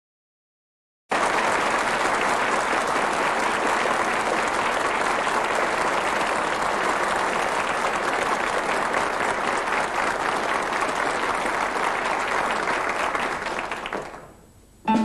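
Audience applauding steadily, starting abruptly about a second in and fading out near the end.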